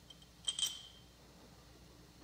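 Two light metallic clinks close together about half a second in: steel parts of a drill press feed handle and a homemade feed arm knocking as they are handled.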